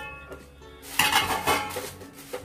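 A spatula stirring dry bay leaves in a pan as they are dry-roasted, scraping and rustling, with two louder strokes about a second and a second and a half in.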